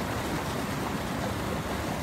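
Steady rush of flowing river water, an even noise with no distinct events.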